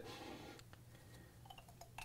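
Near silence: room tone, with a few faint small ticks in the second half as ink-bottle caps are handled.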